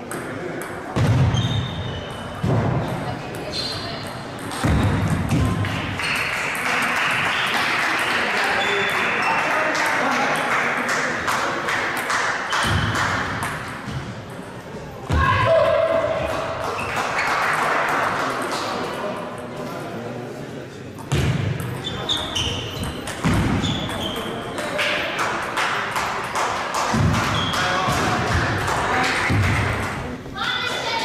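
Table tennis balls clicking off bats and tables in a large, echoing sports hall, with a steady background of indistinct voices.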